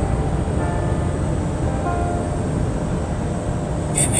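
Steady low rumble of a Scania truck's engine and tyres at highway speed, heard inside the cab, with music playing faintly over it.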